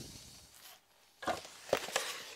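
Faint, brief handling sounds as a flat-screen computer monitor is turned round in the hands: a few short knocks and rustles after about a second of near quiet.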